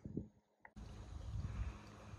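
Wind rumbling on the microphone outdoors, a faint low buffeting that sets in after a brief silence about three-quarters of a second in.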